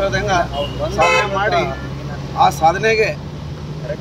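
A man speaking in short phrases over road traffic, with a steady low hum from a running vehicle engine under most of it.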